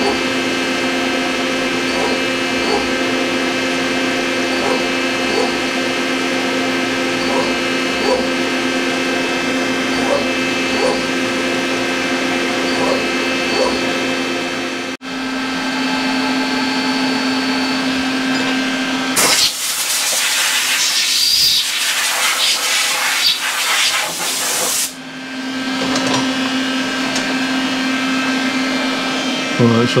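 CNC milling machine running with a steady whine while a tapered end mill slowly cuts tapered holes in an index plate, with faint regular ticks. Past the middle a loud hiss sounds for about five seconds, then the steady whine returns.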